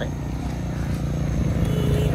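Small step-through motorbike engine running as the bike rides up, growing louder as it nears.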